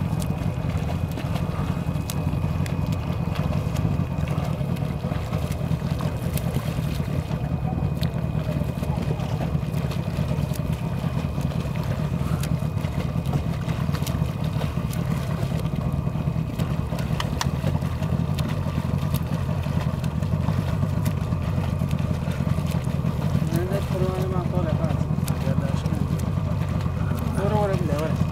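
A boat's motor runs at a steady low speed, making a continuous, even low drone.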